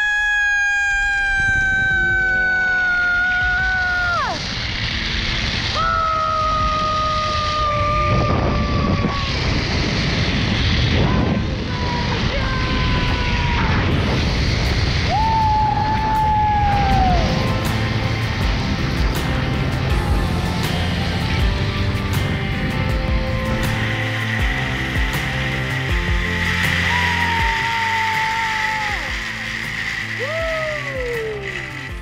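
A woman yelling in long, high-pitched screams on a zip line ride, several times over, each scream falling in pitch as it trails off. Behind her is a steady rushing noise and background music.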